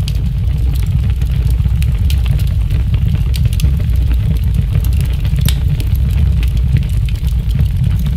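A loud, steady low rumble with faint scattered crackles.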